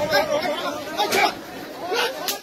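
Only speech: people talking nearby, several voices overlapping.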